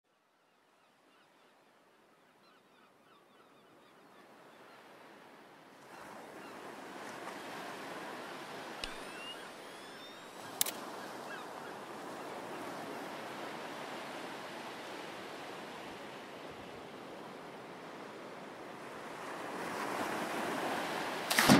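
Sea surf and wind noise fading in from near silence, growing louder about six seconds in and then holding steady. Near the middle come two sharp clicks, the second louder: an instant camera's shutter.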